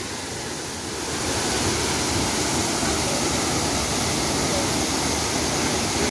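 Waterfall cascading down tiers of rock: a steady rush of falling water, a little louder from about a second in.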